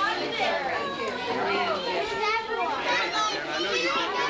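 Many children and adults talking and calling out at once in a crowded room, a steady babble of overlapping voices with high children's voices rising above it.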